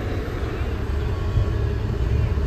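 2008 Chrysler Town & Country minivan's V6 engine idling, heard from inside the cabin as a steady low rumble. The engine seems to have a slight miss at low revs, which the owner thinks probably just needs a tune-up.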